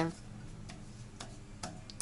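A few faint, sparse clicks and ticks over a low hum from a cast-iron radiator as water gurgles into the heating pipes. The system is being filled while the radiators are still cold.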